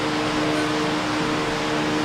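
Steady room noise: an even hiss with a low two-note hum held underneath it.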